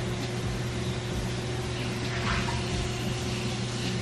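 Steady low hum of a running appliance or air conditioning in a small room, with a faint short sound a little past two seconds in.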